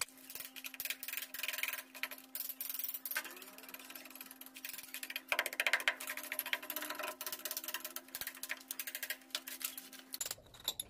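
Rapid light tapping and scraping of a small hammer on packed earth and rubble, with a steady low hum underneath.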